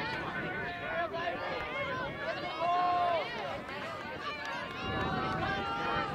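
Several voices shouting and calling out over one another from players, coaches and spectators at a lacrosse game, with the loudest shout about halfway through.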